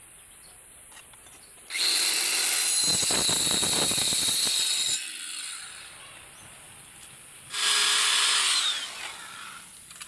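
Handheld electric power tool cutting wood, in two runs: a long one of about three seconds and a shorter one of about a second. The motor winds down with a falling whine as the second run ends.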